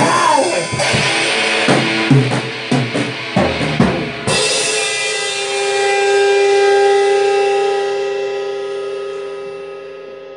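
Rock band playing live, drum kit and electric guitar, hitting the last strokes of a song. About four seconds in the drums and cymbals stop suddenly and a held guitar chord rings on, slowly fading.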